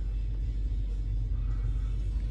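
Steady low rumble inside a parked car's cabin, with faint music under it.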